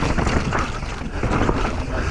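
Mountain bike riding fast down a rocky downhill track: wind rushing over the bike-mounted camera's microphone, with tyres crunching over stones and a steady run of knocks and rattles from the bike.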